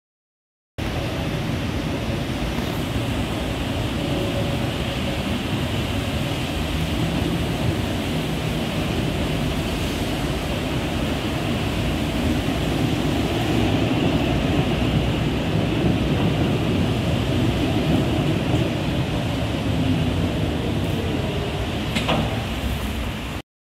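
Steady, noisy rumble from a tram standing at the platform, starting abruptly about a second in and holding level, with no distinct knocks or pitch changes.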